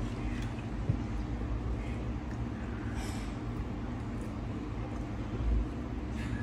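Steady low background rumble with a faint hiss, and one light click about a second in.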